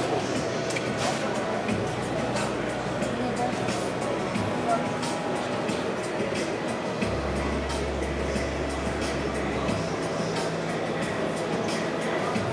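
Busy exhibition hall ambience: a steady murmur of crowd chatter with background music playing, its low bass notes holding and shifting every few seconds.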